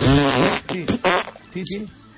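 A loud, fart-like raspberry sound lasting about half a second at the start, followed by a few short spoken words.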